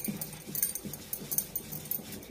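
Wooden rolling pin rolling layered dough on a marble counter, giving faint short squeaks about every half second, with light clicks of bangles.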